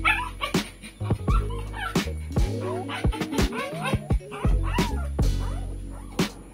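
A young puppy whimpering and yipping several times as liquid dewormer is squeezed into its mouth from an oral syringe, over background music with a steady beat.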